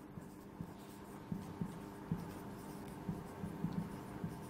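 Marker pen writing on a whiteboard: faint, short strokes of the tip on the board, starting about a second in and coming every fraction of a second.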